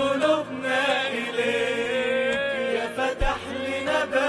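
Worship choir of men and women singing an Arabic Christian hymn together, the melody gliding and ornamented, over a held low accompanying note.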